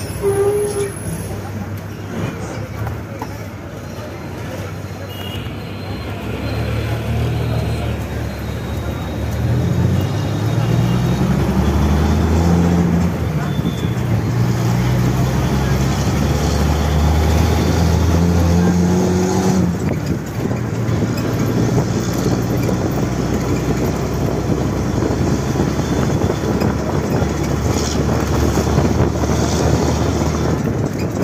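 A bus engine and road noise heard from inside the moving bus's cabin with its windows open. The engine note climbs steadily from about a quarter of the way in as the bus gathers speed, holds, then drops suddenly about two-thirds through.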